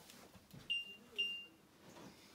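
Stairlift control electronics beeping twice, two short high-pitched beeps about half a second apart, the sort of acknowledgement tone given while the lift is being programmed.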